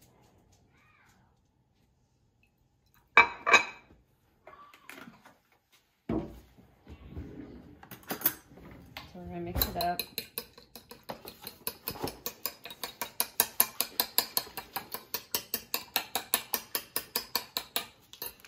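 A fork beating egg and milk together on a ceramic plate: rapid, even clinks of metal on china, about five a second, through the second half. Before that, a few separate knocks, the loudest a clatter about three seconds in.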